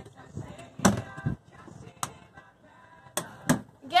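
A boat's battery-compartment hatch being handled and shut: four sharp knocks, one about a second in, one at two seconds, and a close pair near the end.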